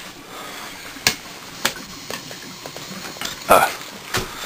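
A utensil clicking and tapping against a frying pan a few times as scrambled egg is stirred, with two sharper clicks early on and smaller ticks after, over a steady faint hiss.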